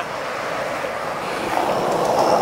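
Steady rushing of wind buffeting the camera microphone outdoors, swelling about a second and a half in.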